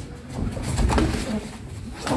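Boxing sparring: a flurry of gloved punches and footwork, loudest about a second in, with a bird calling alongside.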